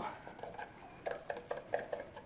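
Wooden stir stick clicking and scraping against the inside of a plastic measuring pitcher while yellow colour is stirred into melted melt-and-pour soap: a series of faint, irregular light clicks.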